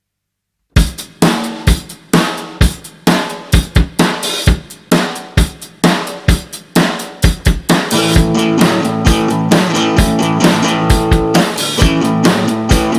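Drum kit playing a rock and roll beat with kick, snare and hi-hat, starting abruptly about a second in. About eight seconds in, a strummed acoustic guitar in the key of A joins the drums.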